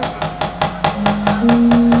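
Rapid, even clatter of a wayang kulit dalang's keprak, metal plates and wooden mallet knocked against the puppet chest, about seven strikes a second, driving a fight scene. About a second in, sustained gamelan tones join and step up in pitch.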